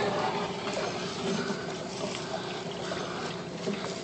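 Water running steadily through PVC plumbing and splashing into an aquaponics grow bed as the system is first filled.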